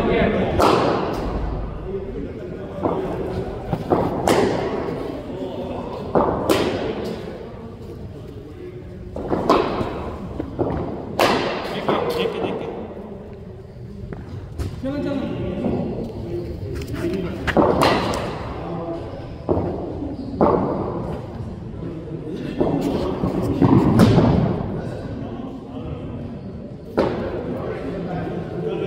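Cricket balls cracking off bats and thudding onto the synthetic pitch and into the netting: a string of sharp knocks every second or few seconds that echo in a large indoor net hall.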